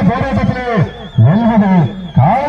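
A man's voice calling out loudly in long, drawn-out phrases that rise and fall, with a faint, thin, wavering high tone in the second half.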